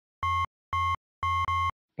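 Synthesized electronic beeps, about two a second, each a clear steady tone with silence between; the last one is drawn out, like two beeps run together.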